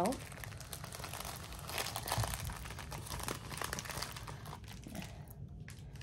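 Plastic packaging being handled, crinkling and rustling irregularly with small clicks; it drops off briefly near the end.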